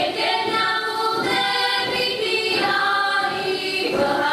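A group of women singing a Slovak folk song together in chorus, in long held notes, phrase after phrase.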